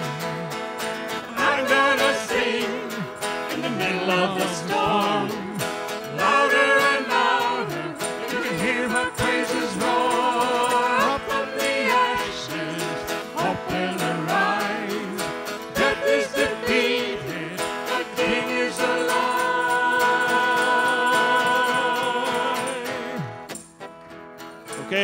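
Live worship song: voices singing with instrumental accompaniment, the music dropping away briefly near the end.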